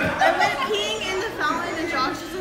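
Overlapping chatter: a woman talking with other people's voices around her at the table.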